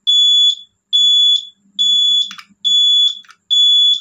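Motorcycle turn-signal beeper sounding five times: a high, even beep of about half a second, repeating a little under once a second in step with the flasher. It shows the indicator is switched on and cycling steadily on the newly fitted turn-signal relay.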